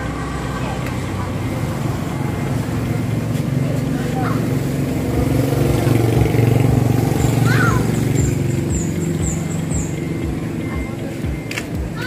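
A small car engine running steadily at idle, growing louder for a few seconds in the middle, while the newly fitted brake-light bulb is being tested.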